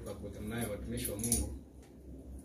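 Low voices speaking in a small room, with a brief high-pitched metallic jingling about a second in.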